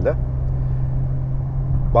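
Steady low drone of engine and road noise inside a moving Audi's cabin, with an even hum underneath.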